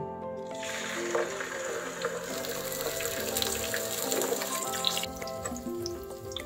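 Whole red snapper (maya-maya) sizzling as it goes into hot oil in a frying pan, a dense hiss starting about half a second in and cutting off suddenly near the end, over background music.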